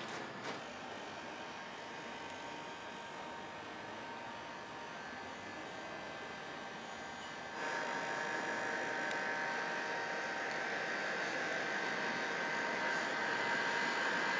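Steady whirring machine noise with a faint high whine, stepping up in loudness about halfway through.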